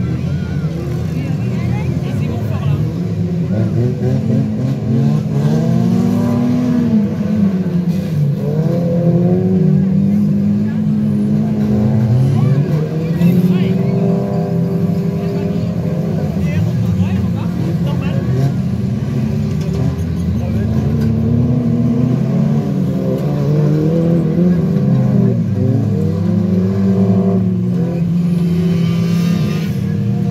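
A pack of stock car engines racing on a dirt track, several at once, their pitches rising and falling as the cars accelerate and lift off through the corners.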